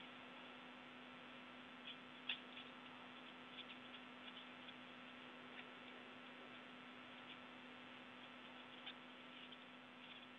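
Near silence: a faint steady hum under a thin hiss, with a few scattered faint clicks, the clearest about two seconds in.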